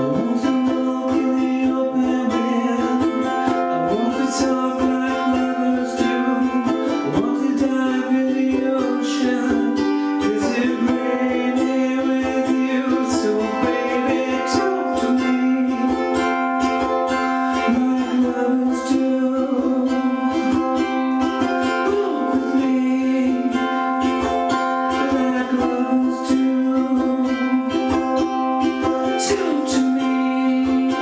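Ukulele strummed steadily in chords with a voice singing along, in a small room.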